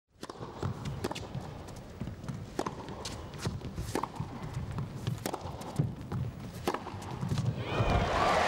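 Tennis rally: the ball is struck back and forth by rackets, sharp pops about once a second over a low crowd hum. The crowd noise swells near the end.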